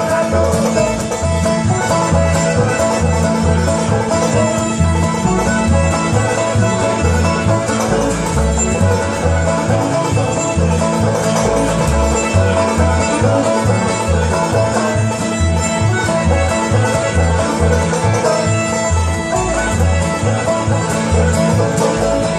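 Live bluegrass band playing an instrumental passage: banjo rolls, strummed acoustic guitar and fiddle over an upright bass plucking a steady, even beat.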